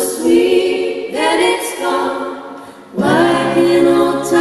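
Female vocal trio singing close harmony in held phrases. New phrases start about a second in and again near the end.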